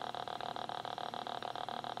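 Electrical noise from a speaker driven by a DFPlayer Mini MP3 module between playbacks: a steady faint hum and whine with fast, even ticking, about a dozen ticks a second.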